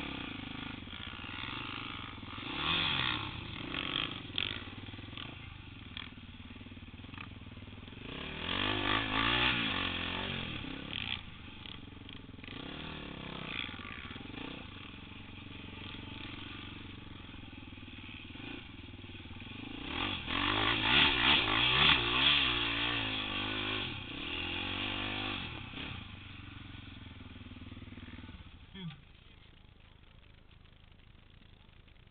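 Off-road ATV (four-wheeler) engines running and revving under load in repeated bursts, their pitch wavering up and down. The loudest runs come about eight to eleven seconds in and again about twenty to twenty-five seconds in.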